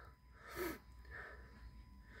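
Mostly quiet, with one short, faint puff of breath close to the microphone about half a second in.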